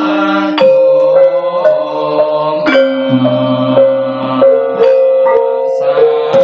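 Javanese gamelan ensemble playing: bronze metallophones and kettle gongs struck in a steady pulse, each note ringing on, with sharp drum strokes. A deeper tone joins about three seconds in and holds for over a second.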